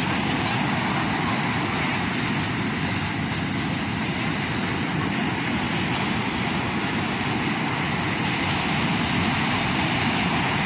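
Ocean surf breaking and washing up a sandy beach: a steady rushing noise.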